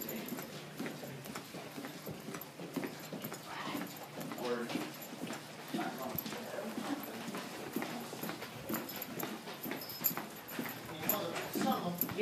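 Footsteps of several people walking on a hard hallway floor, with faint, indistinct voices in the background and a little louder talk near the end.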